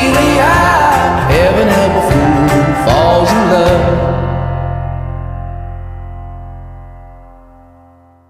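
The end of an indie song: singing over a band with guitar and drums, then the band stops about four seconds in and the last chord rings out and fades away to nothing.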